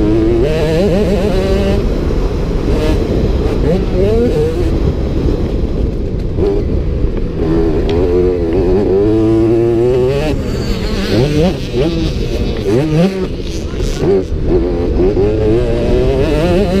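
Motocross bike engine being ridden hard, its pitch climbing through the revs and dropping again and again as the rider shifts and comes off the throttle.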